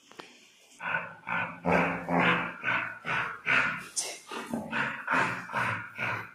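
Dog growling in play while tugging on a toy, in short repeated growls about two a second, starting about a second in.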